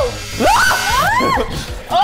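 Excited, high-pitched shouting of "no!" over background music.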